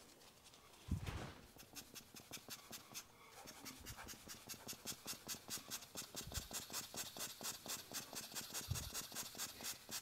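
Quick, faint puffs of air from a hand-squeezed rubber bulb air blower, about seven a second, pumped at wet alcohol ink to push it across the surface. A single thump about a second in is the loudest sound.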